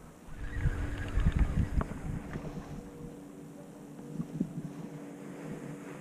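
Wind buffeting the microphone in low rumbling gusts during the first two seconds, easing after that, with a faint steady hum underneath.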